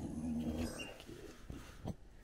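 A dog's low, drawn-out grumbling growl, lasting about the first second, followed by two short faint clicks near the end.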